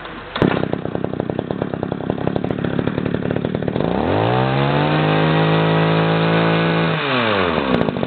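Ochiai engine hedge trimmer starting up about half a second in and idling with a fast, even firing beat. Near the middle its engine revs up to a steady high speed, holds, then drops back toward idle near the end.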